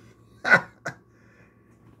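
A man's brief nonverbal vocal sound about half a second in, falling in pitch, with a shorter second one just after. A faint steady high hum runs underneath.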